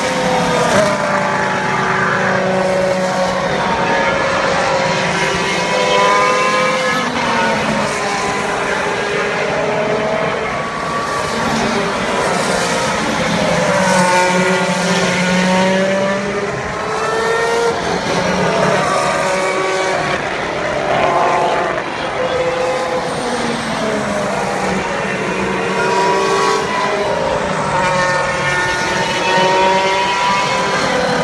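Open-wheel race cars passing through a corner one after another, their engine notes rising and falling as each goes by, with several often heard at once.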